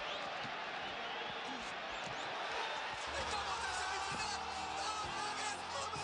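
A crowd of fans shouting and cheering, many voices at once. About halfway through, music with a low bass line comes in under the crowd.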